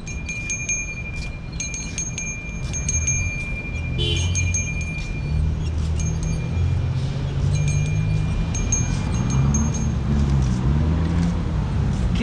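Small bells on a street ice cream pushcart jingling in short, repeated rings, over a low rumble that grows louder in the second half.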